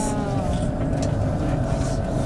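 Bus engine and running gear heard from inside the passenger cabin: a steady low rumble with a faint hum above it.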